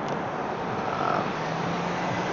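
Steady outdoor background noise, an even hiss, with a faint low hum coming in about a second and a half in.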